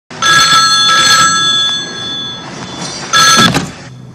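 Old rotary-dial telephone's bell ringing: one long ring of about two seconds, then a second ring just after three seconds in that is cut short.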